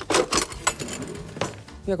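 Crisp crust of a freshly baked homemade flatbread crackling as it is handled and a serrated knife goes into it on a wooden board: several separate sharp crunches.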